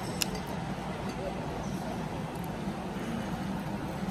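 A single sharp click about a quarter second in as the cap of a plastic water bottle is twisted open, over a steady low room hum.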